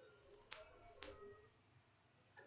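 Two short, sharp clicks about half a second apart in an otherwise near-quiet room.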